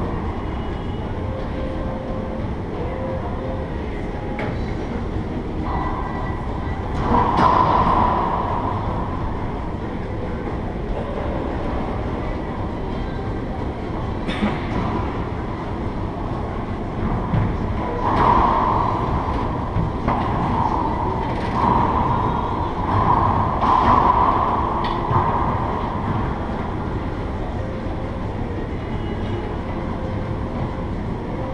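Steady low rumble of the enclosed racquetball court, with a few sharp racquetball hits or bounces that ring off the walls.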